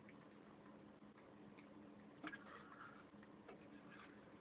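Faint, scattered clicks of a cat eating from a plate, its mouth and a fork ticking against the plate, with one louder click a little past halfway.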